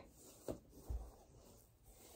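Faint rustling of a fabric sock being pulled off a toddler's foot, with a couple of soft handling knocks, one with a brief low thump about a second in.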